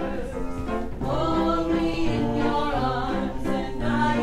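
Musical theatre song: several voices singing together in held notes.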